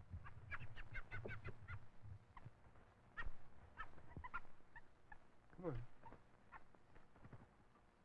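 Canada jay calling at close range, a quick run of short chirps about half a second in and another a few seconds later, with a man's low 'come on' coaxing the bird near the end.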